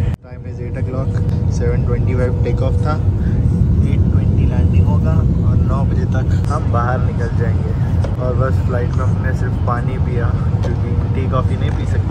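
Jet airliner cabin noise: a steady low engine rumble, with voices talking over it.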